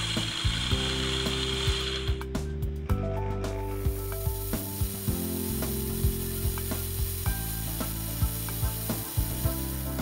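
A small drill cutting a pin hole in a brass clock plate, with background music playing. A high cutting hiss stops about two seconds in, and a finer, higher hiss takes over as the twist drill goes in.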